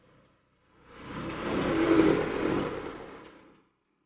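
A motor vehicle passing close by: its engine and road noise swell over about a second, peak near the middle, and fade away before the end.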